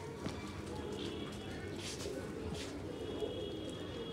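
Pakistani domestic pigeons cooing in their loft, a low steady murmur. Faint thin high tones come in about a second in and again near the end.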